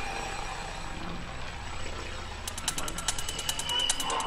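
Goa trance DJ mix in a sparse, quiet passage: a low drone with hiss, then rapid hi-hat ticks come in about halfway through, building the beat back up.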